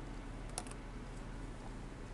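Quiet room tone with a steady low hum, and two or three light clicks just over half a second in.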